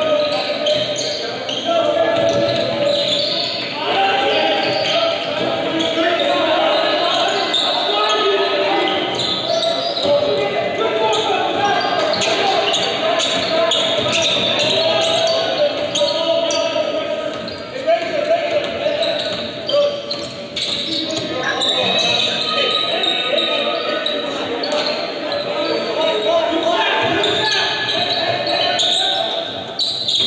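Basketball being dribbled on a hardwood court, with repeated short bounces over steady crowd chatter in a large gym.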